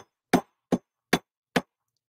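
Polished steel hammer striking twisted wire on a steel bench block, flattening it: a steady run of sharp metallic blows, about two and a half a second.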